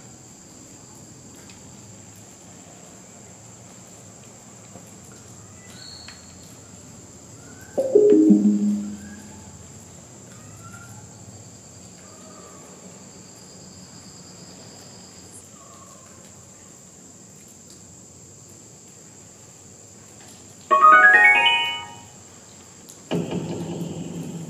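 Necrophonic spirit-box app playing through a phone speaker: a steady hiss with faint high tones and short scattered chirps. It is broken twice, about 8 s and 21 s in, by a brief, loud, voice-like burst that falls in pitch.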